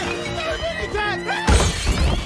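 Film score with plucked-string music, broken about one and a half seconds in by a loud crash of window glass shattering as bodies are thrown through a window.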